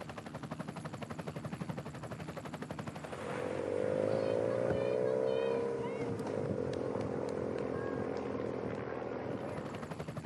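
Rapid chop of a camera helicopter's rotor. About three seconds in, a race motorcycle's engine comes in louder, rising and falling slightly in pitch, then settles into a steadier drone.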